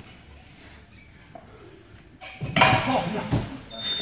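A quiet stretch, then about two seconds in, loud shouted exclamations ("Oh, no") with a sharp knock among them.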